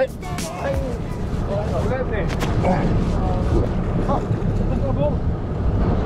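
Wind buffeting the microphone at sea, a steady low rumble, with faint voices in the background.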